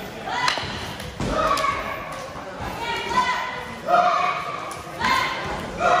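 Stick sparring: rattan sticks knocking against padded gloves, armour and each other, with thuds of footwork on the mat. Several knocks are followed by short squeaky tones, loudest about four seconds in and near the end.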